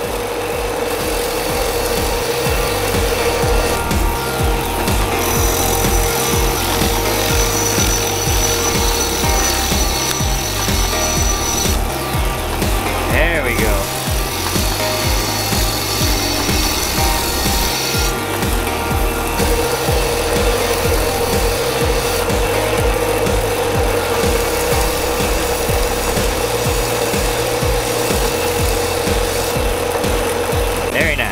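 Belt grinder running with a narrow contact wheel grinding the steel spine of a sword blade: a continuous grinding hiss over a steady whine from the belt and motor.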